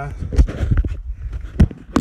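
Handling knocks and bumps from a blue plastic whole-house filter housing being moved about, with two sharper knocks near the end.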